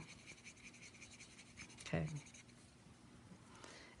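Faint scratching of an alcohol marker's tip stroking over cardstock while colouring, in quick repeated strokes that die away a little past halfway.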